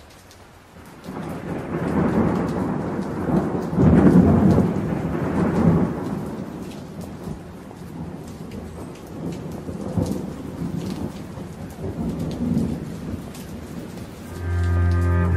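Thunderstorm: rain falling with rolling thunder, fading in from silence. The heaviest rumbles come about two seconds in and again around four to six seconds in, then steady rain with scattered drop ticks.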